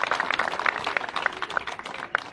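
A crowd of onlookers applauding: many hand claps packed close together, slowly thinning and fading toward the end.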